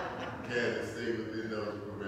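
A man's voice speaking in a room, giving a sermon from the pulpit.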